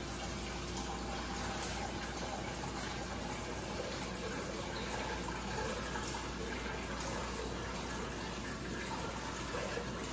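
Kitchen tap running steadily into a metal strainer in the sink, cold water rinsing cooked vermicelli noodles.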